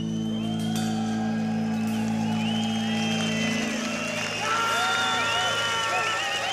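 A rock band's final chord is held and then fades after about three and a half seconds, while a large open-air crowd whistles, whoops and cheers, the cheering growing toward the end.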